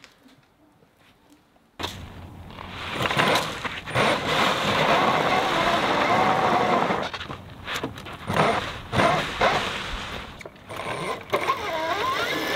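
Near silence for the first couple of seconds, then a brushless electric motor whines as it drives a screw-studded ATV tire through a chain, with the tire spinning and scraping on gravel. The studs give little grip on the gravel.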